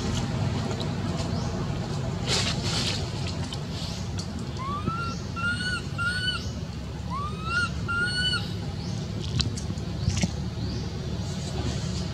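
A handful of short, high, clear calls between about four and eight and a half seconds in, each group a quick rising note followed by one or two level notes, over a steady low rumble.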